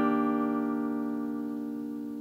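Acoustic guitar E-flat major 7 chord, plucked once just before and left ringing, its several notes fading slowly and evenly.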